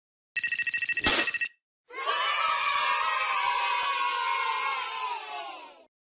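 Intro sound effects: a loud, rapidly pulsing electronic ringing lasting about a second, with a sharp click in the middle. Then a crowd cheering and screaming for about four seconds, fading out near the end.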